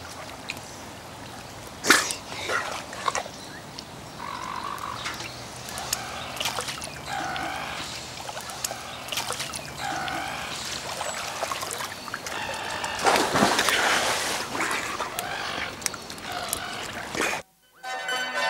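Light background music over water splashing and dripping around a pool, with scattered wet slaps. A longer burst of splashing comes about three-quarters of the way through.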